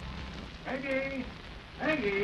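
Hiss and crackle of an old radio transcription recording. A voice calls out briefly about two-thirds of a second in, and speech begins again near the end.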